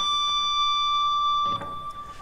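Dean Nash Vegas electric guitar sounding a picked natural harmonic just behind the third fret: a high D that rings at one steady pitch and then stops about a second and a half in.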